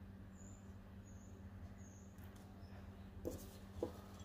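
Faint handling of paper craft embellishments: a few soft taps as die-cut paper flowers are pressed and moved on the layout, over a low steady hum. There are three faint, short, high squeaks in the first two seconds.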